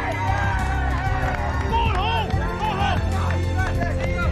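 Excited shouting voices over background music with a steady low bass line.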